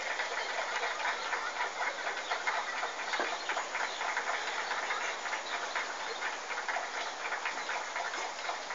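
Heavy rain falling, a steady dense patter of many small drops.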